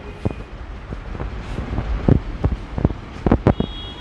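Low rumble with scattered soft knocks and clicks: handling and wind noise on a handheld phone's microphone as it is moved about.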